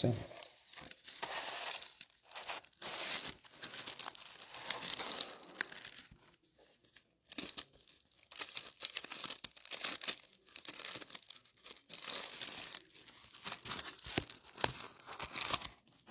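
Thin Bible pages being turned and leafed through by hand, rustling in irregular bursts with a short lull about halfway through.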